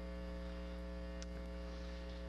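Steady electrical mains hum in the recording chain, a low hum with a stack of overtones, with a faint tick a little past halfway.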